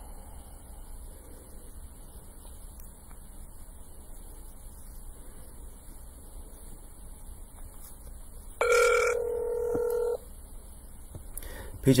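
A phone's electronic tone: one steady beep of several pitches lasting about a second and a half, a little past the middle, heard as a call on the other line is being answered. Otherwise a low steady background hum.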